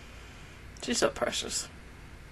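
A brief snatch of speech lasting under a second, starting about a second in, over a faint steady background hum.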